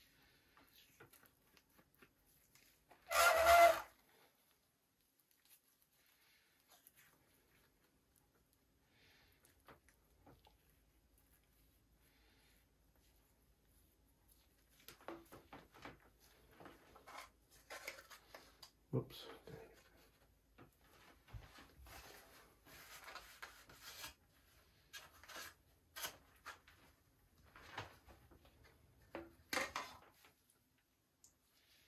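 A wooden stir stick scraping and working two-part epoxy filler putty (Super Fil) in a small plastic cup, in irregular rubbing strokes through the second half. About three seconds in there is a brief, louder voice-like sound.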